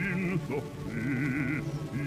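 Male opera singer in a low voice singing short, broken phrases with a wide vibrato over held orchestral notes, on an old 1941 recording.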